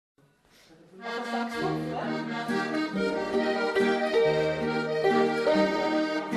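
A waltz played live on diatonic button accordion with hammered dulcimer and guitar accompaniment, the music starting about a second in.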